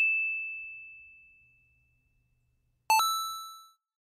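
Two chime-like 'ding' sound effects. The first is a single clear high tone that rings out and fades over about a second and a half. The second, a fuller chime with several tones, is struck about three seconds in and fades within a second.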